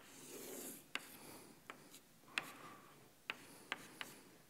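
Chalk on a blackboard, faint: soft scraping strokes as lines are drawn, with about six sharp taps of the chalk as tick marks are set down.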